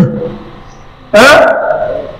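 A man's amplified voice: one short, loud utterance about a second in, trailing off in a long echo, between pauses in a repeated recitation.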